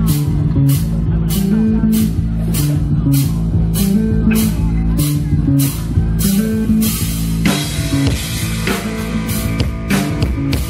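Live rock band playing an instrumental passage: electric bass walking a stepping line under electric guitar and a drum kit keeping a steady cymbal beat. About seven and a half seconds in the drums change to a denser, crashing pattern.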